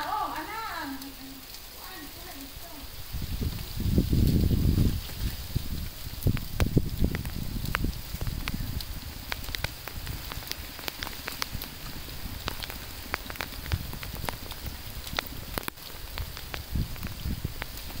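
Wet snow falling with a steady patter and many scattered sharp ticks. A loud low rumble on the microphone about three to five seconds in.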